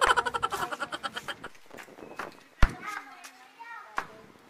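Young girls' high voices: a loud, rapidly pulsing vocal burst at the start, then a sharp knock about two and a half seconds in, followed by a short pitched call.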